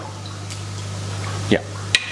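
Steady rush of aerated koi pond water with a constant low hum, and a single sharp click near the end.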